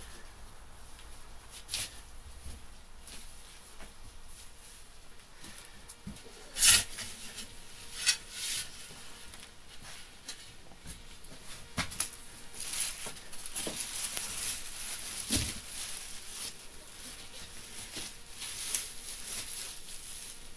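Hands digging in and pressing loose potting soil and compost around kale plants. There is rustling of leaves and soil, with scattered soft knocks and scuffs; the loudest comes about a third of the way in.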